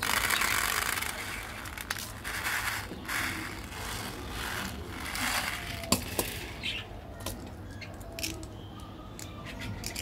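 Tiny candy sprinkles poured and shaken out of a small plastic bottle into a white tray: a rattling hiss in several bursts, loudest in the first second. A few sharp clicks follow in the second half as plastic candy containers are handled.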